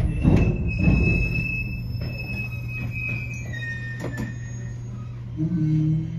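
813-series electric train heard from the cab while braking to a stop. Thin high whines from the drive step down in pitch over a steady low hum, with a few thumps in the first second and one about four seconds in.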